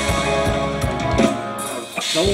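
Live band playing Thai ramwong dance music: a drum kit beating steadily under bass and guitar. The band thins out and goes quieter briefly near the end.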